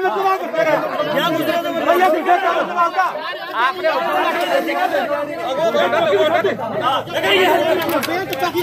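Several men talking loudly over one another at once in a heated argument, no single voice standing clear.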